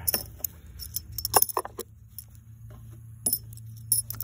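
Large metal game washers clinking together in a hand as they are gathered at the board: a few scattered sharp clinks, a cluster of them about a second and a half in and two more near the end, over a faint steady low hum.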